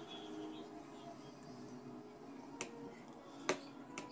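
A plastic spoon clicking sharply against a plastic bowl twice, the second knock louder, over faint background music.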